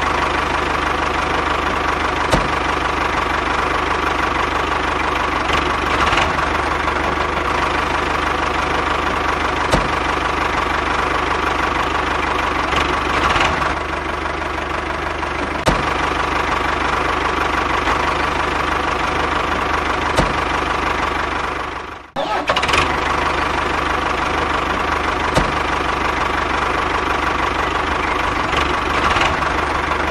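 A motor running steadily with a low drone and a constant whine, like a small tractor engine at work. The sound drops out sharply for a moment about 22 seconds in, then carries on as before.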